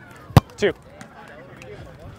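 A single sharp slap of a volleyball being struck by a player about a third of a second in, during an outdoor grass volleyball rally.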